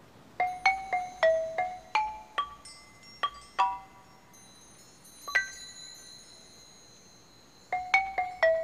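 Music: a melody on a xylophone-like mallet instrument, single struck notes that ring and fade. A quick run of about ten notes comes first, then a lone note with a faint high tone held under it, and a new run of notes begins near the end.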